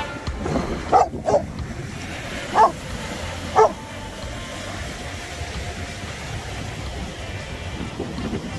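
Greater Swiss Mountain Dog barking four short times in the first few seconds, two in quick succession and then two spaced about a second apart, over a steady wash of surf and wind.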